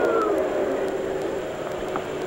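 A steady low mechanical drone with faint held tones, easing off slightly in level.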